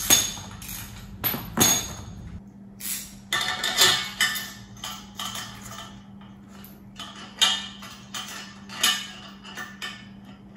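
Metal clinking and knocking of hand tools and steel bolts against the steel frame of a log skidding arch as its hitch is bolted on: scattered sharp clicks, a quick cluster about three to four seconds in, and single clanks later.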